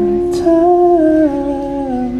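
Acoustic guitar strummed, its chord ringing on, with a man's voice humming a slow melody that steps down over it.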